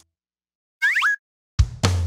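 After a short silence, a brief cartoon sound effect with a quick rising pitch, about a second in; near the end, drum hits start the intro of a children's song.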